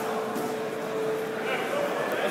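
Background murmur of many voices from spectators and competitors in a large sports hall, with a steady hum underneath.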